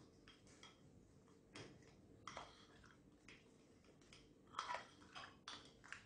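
Faint scattered clicks and scrapes of a metal spoon against a ceramic ramekin as it stirs thick melted chocolate: a few single ticks, then a busier run of them near the end.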